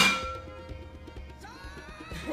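A metal pan lid clangs loudly against the cookware once, with a ringing tone that fades away over about a second.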